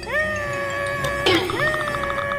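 Cartoon character's vocal sound effect: two drawn-out, whining cries, each sliding up in pitch and then held, over background music.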